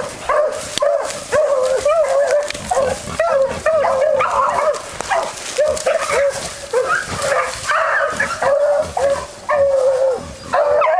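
Beagle baying at a wild boar it is holding at bay, giving an unbroken run of pitched yelping bays, about three a second.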